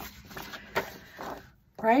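Paper rustling as a planner page is turned and handled, with a few light clicks from handling, ending in near silence.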